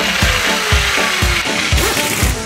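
Battery-powered toy drill running with a steady, rattly whir, over background music with a regular beat.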